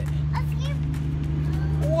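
A steady low motor hum, even in pitch.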